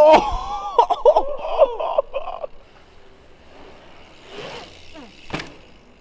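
A man's drawn-out, wavering shouts for the first two and a half seconds. Then, about five seconds in, a single sharp thud as an enduro mountain bike lands a jump on a concrete platform.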